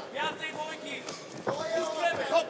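Voices calling out in a boxing arena, not as clear words, with a single sharp thud about one and a half seconds in.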